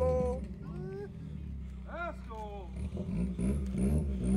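Lifted Toyota truck's engine running low and steady after a burnout, swelling a little near the end, with a few short calls from voices over it.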